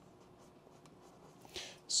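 Pencil writing on a paper data sheet on a clipboard: faint, light scratching.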